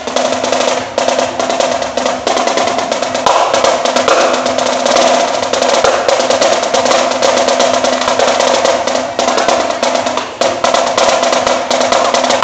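Marching snare drum played with sticks: fast, dense rolls and rudiment patterns with a steady ring from the drumhead, broken by a few short pauses.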